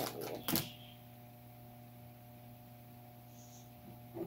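A toy's card-and-plastic blister package rustling and crinkling as it is handled, in a few short bursts during the first second. After that, quiet room tone with a faint steady hum.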